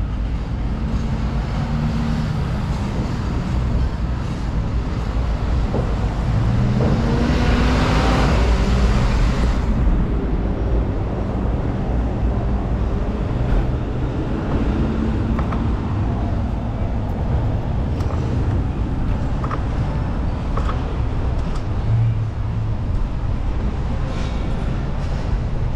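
City street traffic: cars driving through an intersection, their engines rising and fading as they pass, with one louder vehicle going by about eight seconds in.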